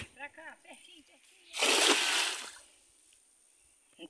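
A cast net thrown into a small pond lands on the water with one splash about a second and a half in, lasting about a second and fading.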